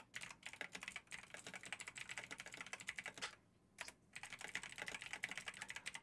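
Faint, rapid typing on a computer keyboard: a quick run of key clicks with a brief pause a little past halfway.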